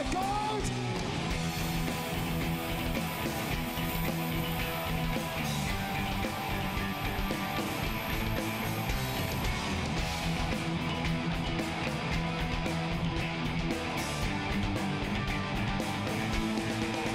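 Heavy metal band playing live: distorted electric guitars over bass and drums in an instrumental passage without vocals, with the cymbals coming in more busily about ten seconds in.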